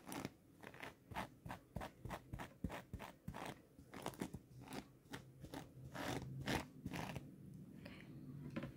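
Close, irregular crunching and clicking sounds, two or three a second, loudest about six seconds in and dying away near the end.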